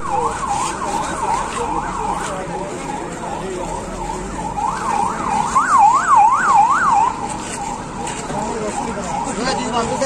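Emergency vehicle's electronic siren sweeping rapidly up and down in pitch, about two and a half rises a second. It is loudest for a couple of seconds past the middle, then fades back.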